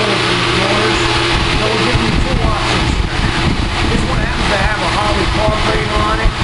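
An engine running steadily with a constant low drone, with indistinct talking over it.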